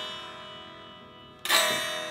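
Electric guitar chord left ringing and fading, then strummed again about one and a half seconds in and left to ring. The Floyd Rose tremolo springs in the back cavity buzz along with it, set off by the guitar's strong resonance.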